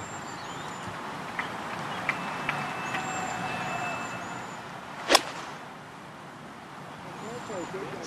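Golf iron striking the ball from the fairway: one sharp, short crack about five seconds in, over a quiet outdoor background with a few faint high chirps.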